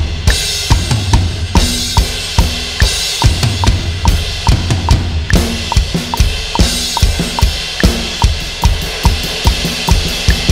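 Roland electronic drum kit heard straight from its module: a 6/8 groove of kick, snare and ride with cymbal crashes, over a steady metronome click of about three ticks a second. Near the end the strokes come faster as the bridge builds toward the chorus.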